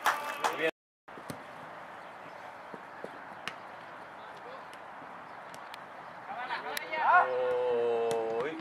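Shouting from the touchline of an outdoor football match cuts off into a moment of dead silence, then open-air hiss from the pitch with a few faint sharp knocks. Near the end a voice rises into a long, loud held shout.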